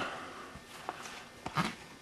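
Quiet kitchen handling: a couple of faint, short clicks and soft knocks as pieces of deboned fried chicken are put into a pot of pot pie filling.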